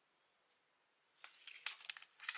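Near silence, then from a little past the first second a quick run of small clicks and rustles as a bra's cardboard hang tag and plastic hanger are handled.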